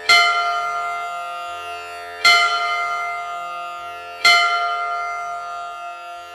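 Three bell strikes about two seconds apart, each ringing out and slowly fading, over sustained plucked-string devotional music.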